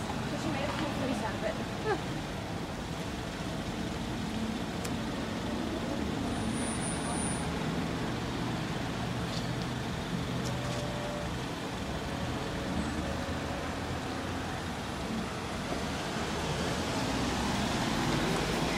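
Road traffic: a queue of cars moving slowly through an intersection, a steady hum of engines and tyres.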